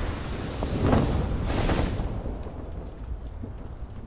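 Animation sound effects: a deep rumbling with a rushing noise that swells to a peak about a second in, then dies down to a quieter low rumble after about two seconds.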